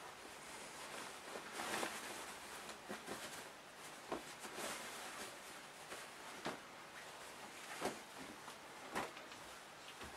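Faint rustling of cotton fabric being handled and turned right side out, with a few soft clicks.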